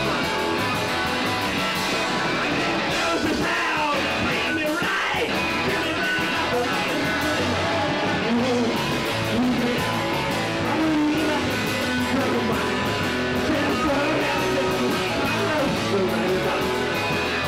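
A live garage rock band playing: electric guitars over a steady drum beat.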